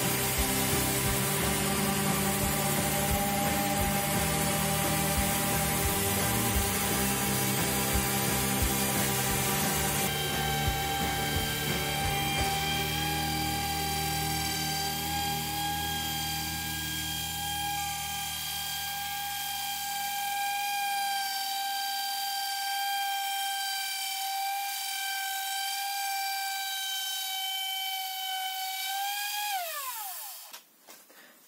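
Hikoki SV13YA random orbital sander running steadily with a 60-grit disc against a wooden tabletop, giving a constant high motor whine. Near the end it is switched off and the whine drops in pitch as the pad spins down.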